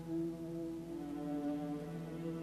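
Symphony orchestra playing slow, held chords: a steady low note sustained beneath higher notes that shift once or twice.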